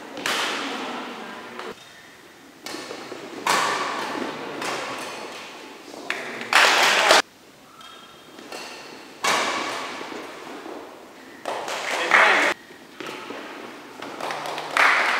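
A badminton rally: rackets striking a shuttlecock, a string of sharp hits a second or two apart, each echoing in a large hall, with players' voices among them.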